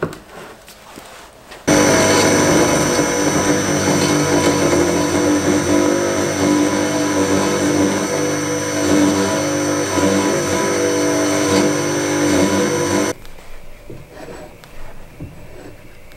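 Metal-cutting cold saw with a 5% cobalt high-speed steel circular blade running into a bar of very hard steel, a steady machine sound with a thin high whine; the blade is hardly scratching the bar. It starts abruptly about two seconds in and cuts off abruptly after about eleven seconds.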